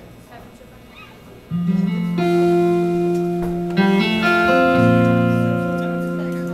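Electric guitar picking single notes one after another, each left ringing so they build into a sustained chord as a song begins. A few quiet seconds of room murmur come before the first note, about a second and a half in.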